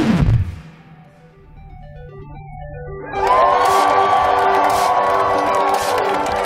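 Soundtrack music: a falling sweep dies away into a quiet passage of soft stepped notes over a low steady hum. About three seconds in, a crowd breaks into loud cheering and yelling over the music.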